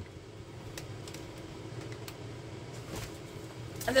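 Faint handling noises, a few soft clicks about a second apart, over a low steady hum.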